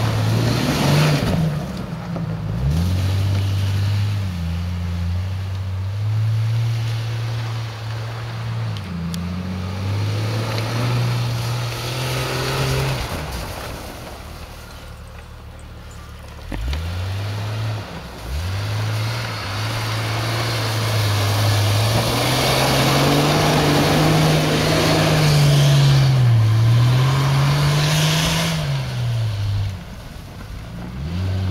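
Lifted Jeep Cherokee's engine revving up and down as it drives through about six inches of snow. The throttle eases off about halfway through, then picks up again and is worked hardest, pitch wavering up and down, in the last third, with the hiss of the tyres churning snow.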